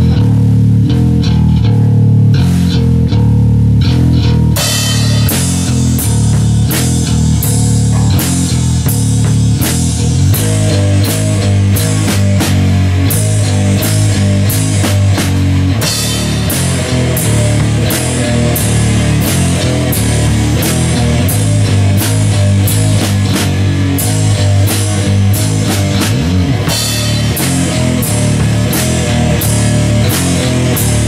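Live band playing heavy rock: electric guitar and bass guitar play a riff, and the drum kit comes in about four and a half seconds in, then keeps a steady beat.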